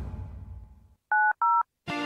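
Two short touch-tone telephone keypad beeps, each a two-note tone, one right after the other about a second in. Music starts just before the end.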